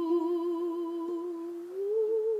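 A woman humming a long held note with a slow vibrato, sliding up to a higher note near the end, with a ukulele ringing softly beneath.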